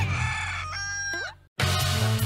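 A rooster crowing once as a morning cue: one held, high call with a downward bend at the end, coming about halfway through as the preceding music fades. It cuts off into a brief silence, and new music with drums starts just before the end.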